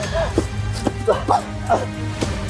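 A man's short cries of pain, about five in quick succession, over background music.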